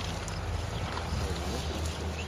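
A steady low mechanical hum under faint outdoor background noise.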